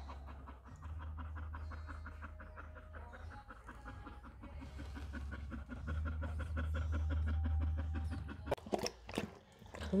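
Mother dog in labour panting rapidly and evenly, over a low steady hum. A few sharp knocks come near the end.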